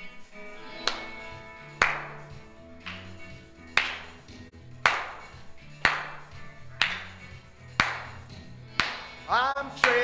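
Instrumental intro of a contemporary worship song played through a television, with bass notes and a sharp clap-like hit about once a second. A voice starts singing near the end.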